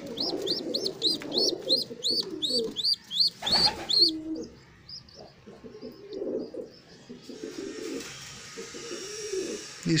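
Pigeon squabs begging: a rapid run of high, arched squeaks, about four a second, that stops about four seconds in. After that, pigeons coo softly and low.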